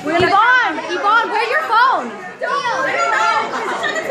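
Several girls' voices chattering excitedly over one another, high and sliding widely up and down in pitch.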